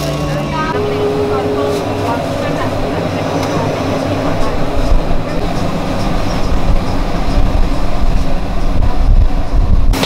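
Loud, steady low rumbling noise that swells and grows rougher through the second half. A faint steady tone sounds briefly in the first two seconds.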